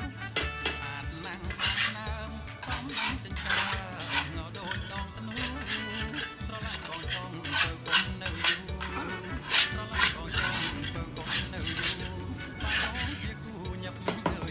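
Irregular clinks and scrapes from hard objects being handled against a large plant pot, loudest around eight and ten seconds in, with quiet background music underneath.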